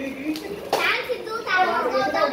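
Children's voices talking and exclaiming over one another.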